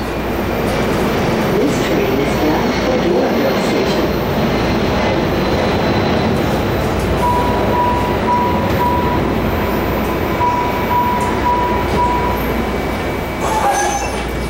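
Interior sound of a MARTA subway car running along the track: a steady, loud rumble and rolling noise. A thin, broken high tone comes and goes from about halfway through until near the end.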